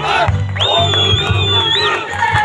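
Marching crowd shouting over loud music with a heavy low beat, and a long, high, steady whistle-like note held for about a second in the middle.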